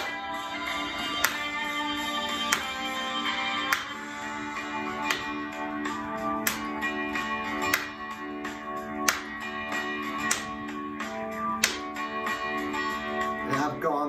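Instrumental break of a rock backing track: sustained guitar and chord tones, with a sharp drum hit about every second and a quarter and no singing.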